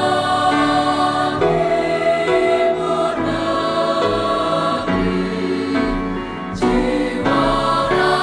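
A choir singing in harmony, holding long chords that change every second or so.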